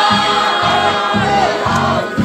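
A group of voices singing together through a microphone and loudspeaker, over a steady low beat about twice a second.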